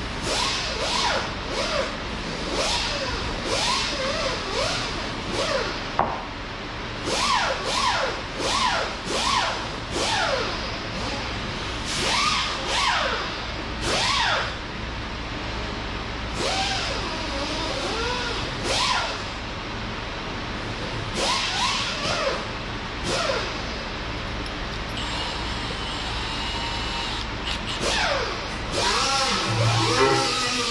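Cordless drill run in many short bursts, its motor whine rising and falling in pitch with each trigger pull, while drilling new holes.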